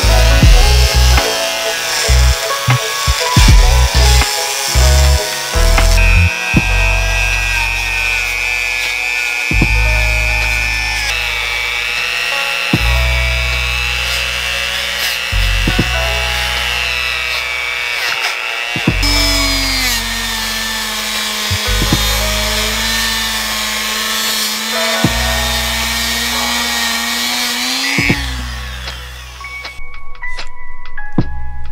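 Background music with a steady beat, over the whine of a handheld rotary tool spinning a small abrasive wheel against the engine's metal to strip off rust, old paint and grime.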